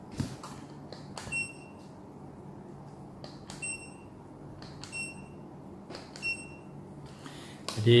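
CONTEC TP500N non-contact infrared thermometer: button clicks and four short, high-pitched beeps a second or two apart, as it is switched on and triggered to take readings.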